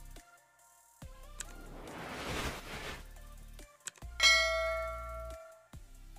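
A swelling whoosh about two seconds in, then a single bright bell-like chime a little after four seconds that rings out for about a second: the start-up sound of a Tecno Camon 16S smartphone as it boots. Light background music runs underneath.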